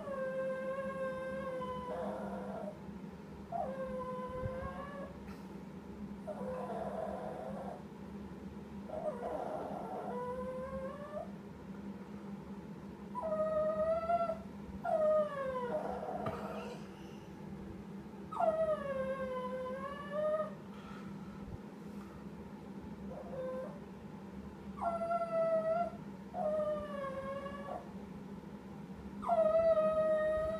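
Small dog whining and howling in about ten drawn-out, sing-song cries, each a second or two long and sliding down and back up in pitch, the 'sad song' of a dog that has lost its ball under the furniture and wants it back.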